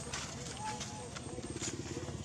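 A short, faint squeak from an infant macaque. From about a second in, a low, rapid pulsing hum sets in and keeps going.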